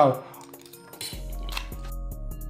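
A fork clinking and scraping on a metal baking tray of noodles, then background music with a low bass and a steady beat comes in about a second in.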